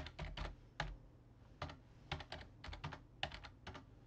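Typing on a computer keyboard: faint, quick runs of key clicks with short pauses between them, as numbers are keyed in.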